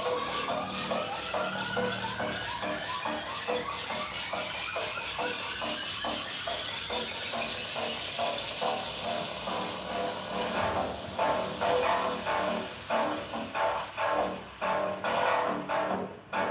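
Electronic workout music with a steady beat and a rising sweep that builds through the first half, then louder, choppier beats in the last few seconds.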